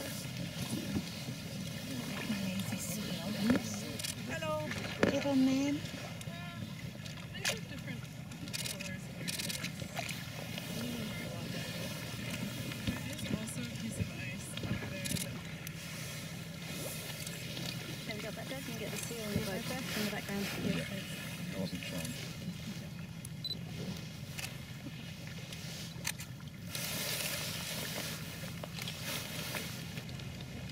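Outboard motor of an inflatable boat running steadily at low speed, with indistinct voices of people in the boat now and then, and a few light knocks.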